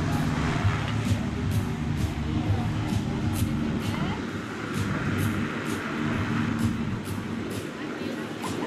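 Light single-engine airplane's piston engine running steadily as the plane lifts off and climbs away, a continuous drone.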